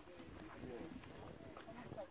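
Faint, indistinct talking by people close by, the words not made out.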